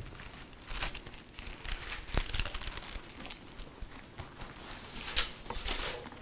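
Thin Bible pages rustling as they are turned, in a few separate short crinkles.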